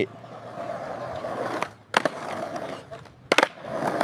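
AI-generated (Google Veo 3) sound of skateboard wheels rolling on a concrete sidewalk. There is a sharp clack of the board about two seconds in and two more close together a little after three seconds.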